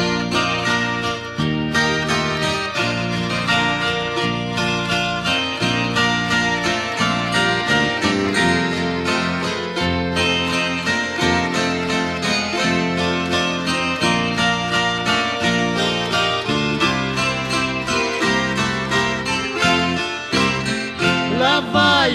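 Instrumental introduction of a sertanejo (Brazilian country) song: plucked acoustic guitars playing a melody over a steady, regularly changing bass.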